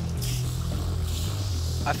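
Steady hiss from a torch-heated, warped steel sword blade as water dripped onto it flashes to steam, an attempt to pull the warp out of the blade.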